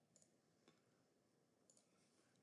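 Near silence broken by a few faint computer mouse clicks, about three of them spread across two seconds.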